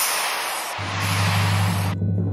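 A hissing water-spray sound effect for a toy fire pump putting out a fire, cutting off suddenly at the end. A low steady musical drone comes in under it about a second in.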